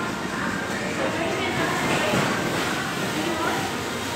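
Indistinct voices over the steady background noise of a fast-food restaurant dining room.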